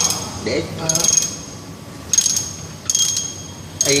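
Ratchet wrench clicking in short bursts, about four of them, with a high metallic ring, as the bolts on a Y-strainer's cover flange are tightened down during reassembly.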